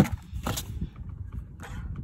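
Plastic degreaser jug and spray bottle being handled on cardboard: a sharp knock right at the start, a second lighter knock about half a second in, then soft rustling and bumping.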